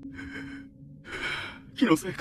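Animated character's voice: two short breathy vocal sounds, then speech starting near the end, over a faint steady low hum.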